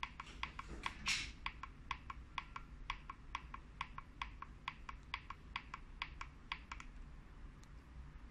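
Small push-buttons on the front of a digital panel indicator being pressed over and over, a quick run of sharp clicks at about three to four a second, stepping the display through digits and values while a parameter is set. There is a brief louder scrape about a second in, and the clicking stops about a second before the end.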